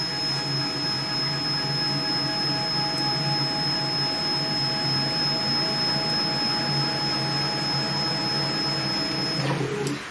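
Stepper motors of a DIY CNC router driving the axes along their lead screws in a homing move: a steady machine whine with a high tone above it. It cuts off near the end as the move finishes.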